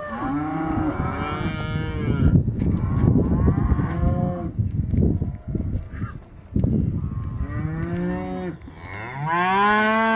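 Heifers mooing, several calls from more than one animal, some overlapping, each rising and falling in pitch. There are short gaps around 5 to 7 seconds in, and a long call starts near the end.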